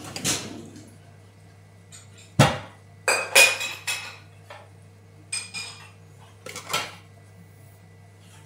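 Dishes and cutlery clinking and knocking together as a dishwasher is emptied: separate clatters every second or two, the loudest a sharp knock about two and a half seconds in, followed by a cluster of ringing clinks.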